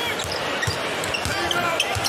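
A basketball being dribbled on a hardwood court, with repeated bounces over the steady murmur of an arena crowd. A few short sneaker squeaks can be heard.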